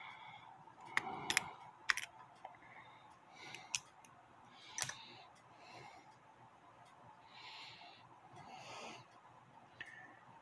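Light metallic clicks and scrapes of locking pliers and fingers on a brass clock movement as the strike hammer is worked loose: several sharp clicks in the first two seconds, another near five seconds, and soft rustling between.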